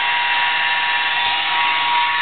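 A small electric motor, such as a power tool's, running steadily with a constant high whine over an airy hiss.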